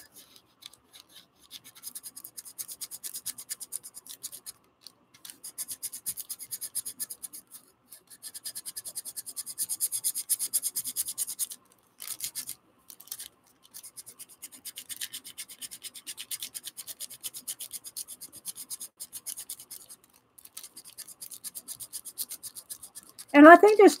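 Bone folder rubbing back and forth over a paper tracing, burnishing the pencil graphite onto a stamp-carving block: rapid scratchy strokes in runs with several brief pauses.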